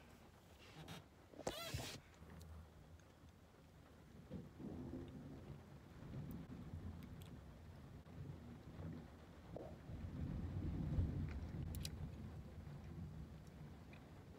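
Gulping and swallowing juice from a plastic bottle held at the mouth, close to the microphone: low, irregular swallowing sounds, loudest about ten to eleven seconds in. A short sharp crackle about a second and a half in.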